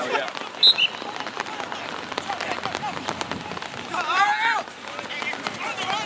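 Rain pattering steadily in many small drop clicks on an outdoor field. A brief high chirp sounds just under a second in, and a voice calls out in the distance about four seconds in.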